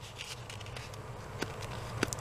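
Quiet handling of paper sticker sheets: a few faint ticks and light rustles over a low steady hum.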